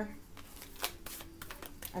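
Tarot cards being shuffled and drawn by hand: a scattering of light, quick card clicks and snaps.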